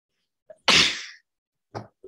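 A person sneezing once: a single loud burst about half a second in.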